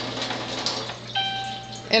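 A single steady electronic beep from a water ionizer, starting about a second in and held for under a second, over a low steady hum.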